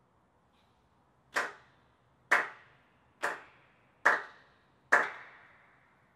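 Five sharp cracks, evenly spaced about once a second, each with a short echo that dies away.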